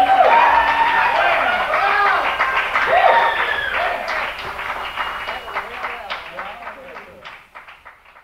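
Several voices overlapping, with scattered hand claps, fading out near the end.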